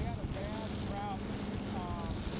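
Wind buffeting the microphone of a camera mounted on a moving motorboat, over a steady low rumble of the boat running across the water.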